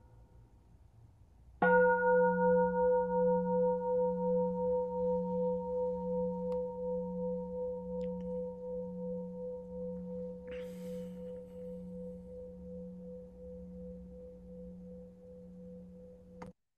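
A singing bowl struck once, about one and a half seconds in, after a fainter earlier ring has nearly died away; it rings on in a slow, pulsing wobble, fading steadily. The strike signals the end of the silent sitting period.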